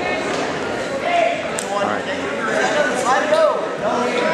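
Indistinct voices and shouts of spectators echoing in a gym hall, with a single sharp click about one and a half seconds in.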